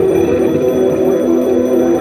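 Live experimental electronic noise music: a loud, dense drone of several held tones that step down in pitch over a steady hiss.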